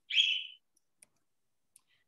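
A brief hiss near the start, like a sharp intake of breath, then two faint single clicks of the kind a computer mouse makes, about three-quarters of a second apart.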